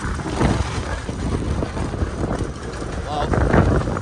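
1994 Mahindra diesel jeep driving on a rough gravel road, its engine running under an uneven clatter of rattles and knocks from the body and tyres on the stones, with wind buffeting the microphone.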